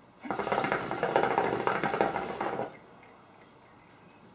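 Shisha (hookah) water bubbling as a long draw is pulled through the hose: a dense, rapid gurgle lasting about two and a half seconds, then it stops.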